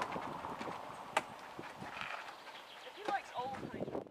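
Outdoor ambience of a small group walking, with footsteps and indistinct voices. There is a sharp click about a second in.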